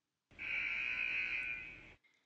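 A 'wrong answer' buzzer sound effect: one harsh, steady buzz lasting about a second and a half and fading out at the end, signalling an incorrect example.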